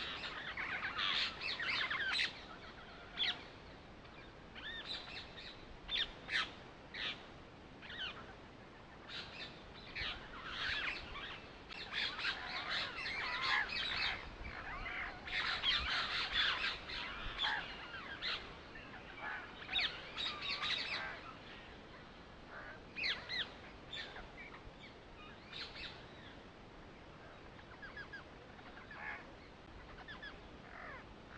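Birds chirping: many short, high calls in quick clusters, busiest around the middle and thinning out near the end.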